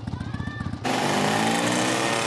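Cartoon vehicle engine sound effect: a rapid low putter, then, just under a second in, a sudden louder, denser engine noise as the vehicle pulls away.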